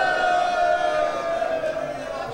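A man's voice holding one long, high chanted note in majlis recitation, the pitch sliding slowly down and fading near the end.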